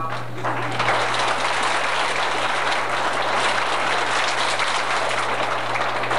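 Audience applauding in a hall, a dense patter of many hands clapping that starts just after the start, over a steady low hum from the old tape recording.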